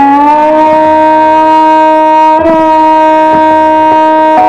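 Indian classical violin playing Raag Shyam Kalyan: a long bowed note, slid slightly up into at the start and then held steady, with a brief ornament about two and a half seconds in.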